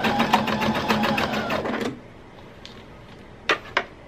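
Domestic electric sewing machine stitching along a dress hem: a quick, even run of needle strokes over the motor's hum, stopping about two seconds in. Two short clicks follow near the end.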